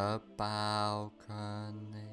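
A man's low voice drawing out long, held syllables, with short breaks between them, over a faint steady musical drone.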